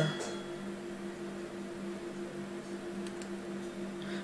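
Steady low electrical hum over faint room noise, with a couple of faint clicks about three seconds in.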